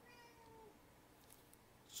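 A single faint cat meow, under a second long, falling slightly in pitch.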